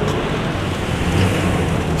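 Steady street noise: a low rumble and hiss of road traffic.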